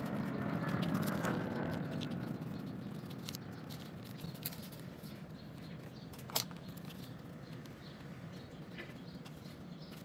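Thin paper being folded and creased by hand, with rustling, light crinkling and scattered small clicks, loudest in the first couple of seconds. One sharp click about six seconds in.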